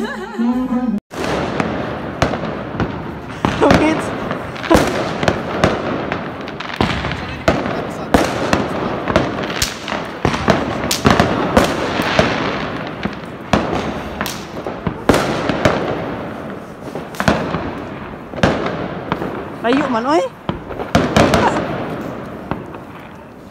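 About a second of indoor party singing, then many fireworks and firecrackers going off all around: a dense, continuous crackle punctuated by frequent sharp bangs at irregular intervals, with voices now and then.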